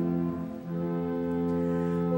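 Church organ holding sustained chords, with a short dip and a chord change about half a second in, accompanying the sung responsorial psalm between the cantor's phrases.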